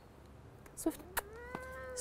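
A cat meowing: one drawn-out call that starts about a second in, rises in pitch, then holds steady.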